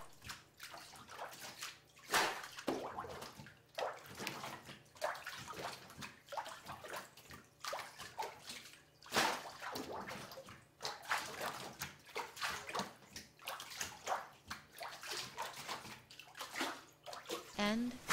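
Water and paper pulp sloshing and splashing in a washi papermaker's screen as it is scooped from the vat and rocked back and forth, in irregular splashes about a second apart.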